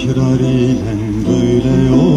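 Live Turkish folk song (türkü): a singer's voice holding long, wavering notes with instrumental accompaniment.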